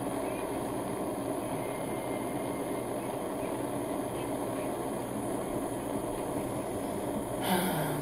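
Handheld butane torch burning with a steady hiss as its flame heats the quartz banger of a dab rig. A voice begins near the end.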